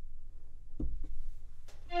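Two faint taps, then near the end a sustained synth pad chord from a Synthstrom Deluge groovebox starts, several steady notes held together.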